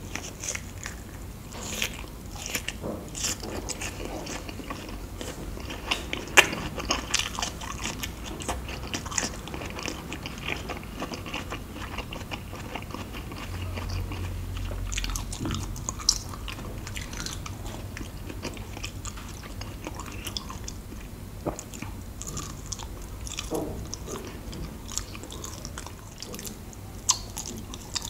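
Close-miked chewing and biting of luk chup, Thai mung bean sweets with a glossy agar jelly coating: wet mouth sounds with many small clicks and a few sharper snaps, and a fresh bite near the end.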